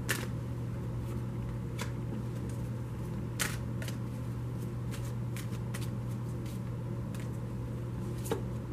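An oracle card deck shuffled by hand: scattered soft card slaps and rustles at irregular intervals, over a steady low hum.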